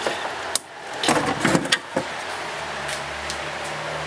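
Heavy metal amplifier chassis being flipped over on a workbench: several clunks, scrapes and rattles of the metal cabinet in the first two seconds, then a steady low hum.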